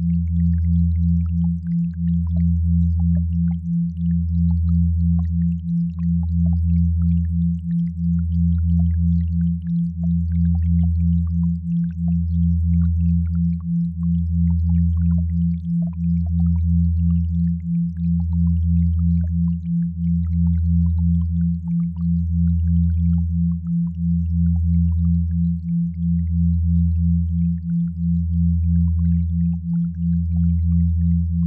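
Generated binaural-beat sine tones: a deep hum that swells and fades about every two seconds, under a higher steady tone that pulses about twice a second.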